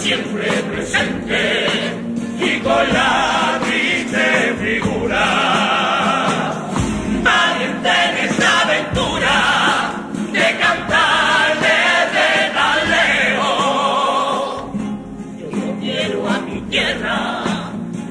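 A Cádiz carnival comparsa chorus singing a passage of its popurrí in multi-part harmony. The voices drop away briefly near the end and then come back in.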